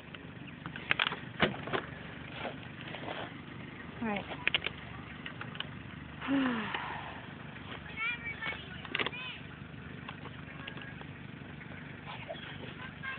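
Tractor engine running steadily in the background, with a few sharp clicks and brief voices over it.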